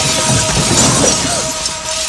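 Car windshield glass shattering, with shards tinkling as it breaks up, over background music.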